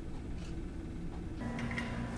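Quiet room tone with a steady low background noise. About one and a half seconds in, the background changes to a faint steady hum with a few constant tones, the ambience of a larger indoor space.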